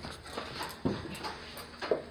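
Two dull knocks about a second apart with light clicks in between, from a wire birdcage being carried by its handle.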